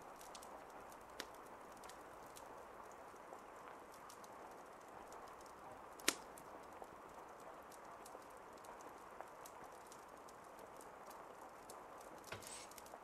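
Faint steady hiss with many soft scattered clicks, and one sharper click about six seconds in.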